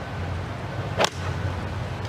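Golf iron striking the ball on a tee shot: one sharp click about a second in, over a steady low hum.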